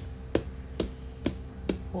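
Sharp clicks at an even pace, about two a second, over a faint steady hum.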